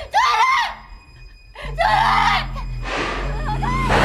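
A woman screaming and crying out for help in several desperate bursts. A low music drone runs under the later cries, and a swell of noise builds near the end.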